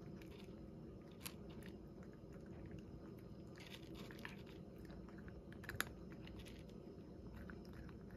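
A cat chewing dry kibble from a bowl: faint, irregular crunches, with a sharper click about a second in and a louder one past the middle.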